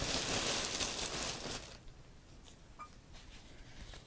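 Polyester fiberfill stuffing rustling as it is pulled and handled, loud for the first second and a half or so, then fading to faint handling noise.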